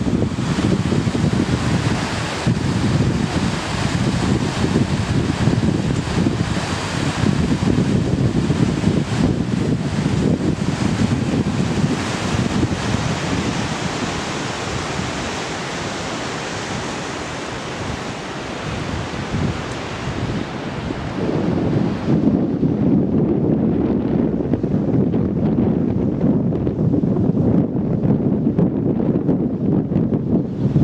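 A fast mountain river rushing over rocks, a steady full hiss, with wind on the microphone. About two-thirds of the way through, the rushing hiss falls away and a low wind rumble on the microphone takes over.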